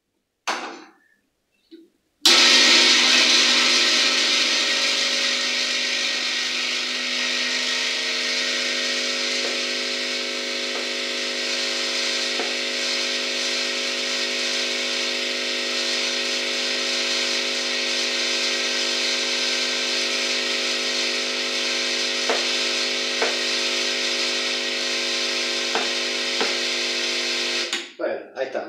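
Generic Ulka-type vibratory pump of an espresso machine buzzing steadily while pulling a shot of espresso. It starts abruptly about two seconds in, loudest at first, then settles to an even level and cuts off just before the end.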